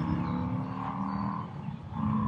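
Steady engine hum in the background, with a low drone and a higher steady tone, easing off somewhat in the second half.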